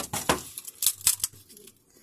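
Handling noise from a wood-PLA 3D print being turned in the hands: a handful of sharp clicks and taps, most of them in the first second and a half.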